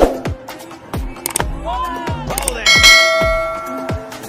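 Pop music with a steady beat, and a bright bell-like chime about two and three-quarter seconds in that rings on and slowly fades: the notification-bell sound effect of a subscribe-button animation.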